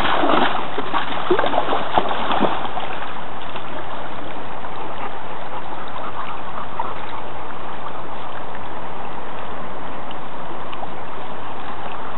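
River water running in a steady rush at the bank, with a dog splashing as it wades through the current in the first couple of seconds.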